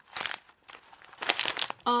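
A plastic snack bag of dried seeds crinkling as it is handled: one short crackle right at the start, then a longer run of crinkling for about a second.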